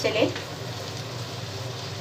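Prawns with tomato and spices sizzling steadily in hot oil in a frying pan.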